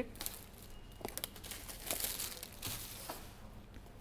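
Thin plastic shrink-wrap being peeled and pulled off a smartphone's cardboard box, crinkling and crackling irregularly.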